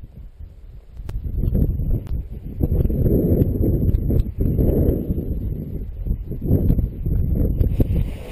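Strong gusting wind buffeting a head-mounted camera's microphone, rising and falling in heavy rumbles, mixed with rustling of a speed-flying wing's fabric and crunching steps in snow during the launch run.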